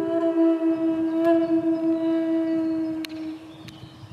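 Native American flute holding one long, low note that fades away about three seconds in.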